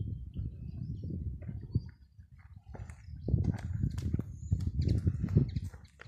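Uneven low rumble of wind buffeting a phone microphone outdoors, with scattered crackles and clicks that come thickest in the second half.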